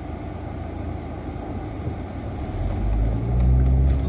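Car cabin noise while driving: a steady low rumble of engine and road. A low engine drone swells louder in the last second and a half.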